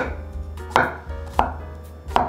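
Chinese cleaver slicing a small cucumber into rounds on a wooden cutting board: three sharp knife strikes on the board, about two-thirds of a second apart.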